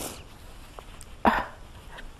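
A tearful woman sniffling into a tissue: a faint sniff at the start and a short, louder sniffle just over a second in.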